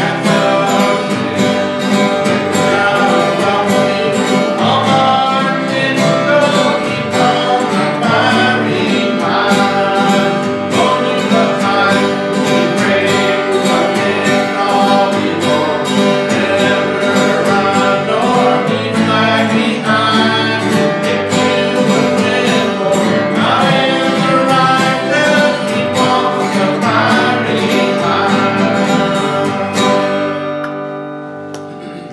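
Live country-gospel music: an acoustic guitar strummed and picked steadily, with a voice singing along.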